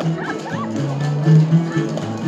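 Live bluegrass music with guitar and a low bass note that swells near the middle. A few short, high, voice-like yelps rise and fall over it in the first second.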